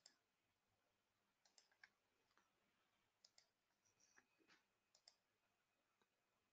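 Near silence with faint computer mouse clicks scattered irregularly, some in quick pairs.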